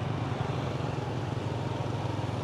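A small motorbike engine running steadily at cruising speed, a low even drone, with road and wind noise from riding.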